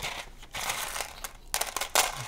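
Plastic packaging crinkling as board game pieces are unwrapped, with a few sharp clicks near the end.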